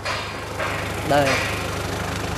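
Nissan 2-ton forklift's engine idling with a steady, low, even hum.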